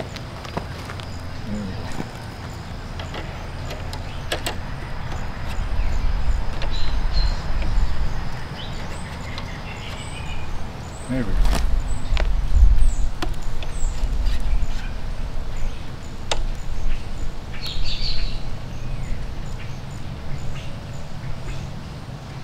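A steady low outdoor rumble that swells twice, with a few sharp clicks as the steering damper parts are handled at the motorcycle's handlebars, and occasional faint bird chirps.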